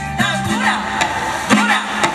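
Live Latin band music: a woman singing into a microphone over keyboard and drums, with a sharp drum hit about a second and a half in.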